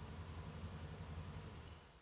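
Polaris Sportsman 570's single-cylinder engine idling with a faint, steady low hum, warming up before an oil change; the sound dies away near the end.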